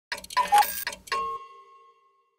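Short electronic intro sound logo: a quick run of ticks and bright clicks, then a single struck chime-like tone that rings on and fades away.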